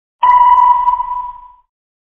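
A single sonar-style ping: one clear electronic tone that starts sharply and rings out, fading away over about a second and a half.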